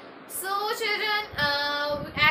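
A woman singing a short phrase that ends on a long note held at one pitch.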